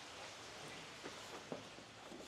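Faint steady hiss with a few soft clicks and taps as the heavy steel front door is handled.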